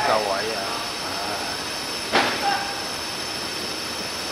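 Open-air football pitch ambience: a steady hiss under players' shouts, with one sharp thump of a football being kicked about two seconds in.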